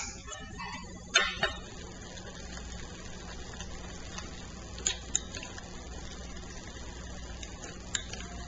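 Electric stand mixer running steadily at low speed as it beats whipped cream, with a few sharp clicks about a second in and again around the middle.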